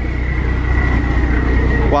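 Diesel engine of a river express boat running with a loud, steady low drone, a faint steady high whine above it.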